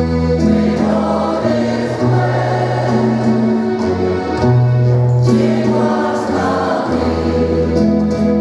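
Women's choir singing a habanera in parts: held chords that move on every second or so.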